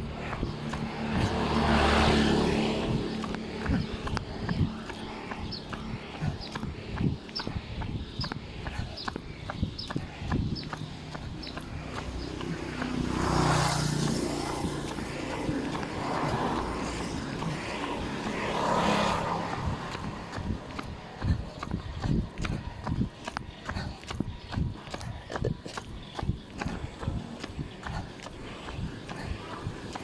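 Rustling and irregular knocks from a phone carried against clothing, with three louder swells of outdoor noise about two, thirteen and nineteen seconds in.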